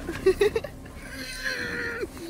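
A person laughing: a few short, loud bursts of laughter about the first half second, then a softer drawn-out laugh near the end.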